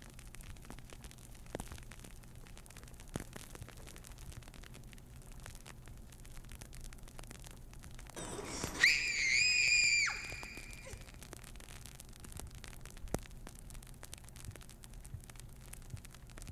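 Faint steady hiss and low hum with a few soft clicks. About eight seconds in, a girl's high-pitched scream rises, holds for about a second and a half with a slight waver, and cuts off abruptly.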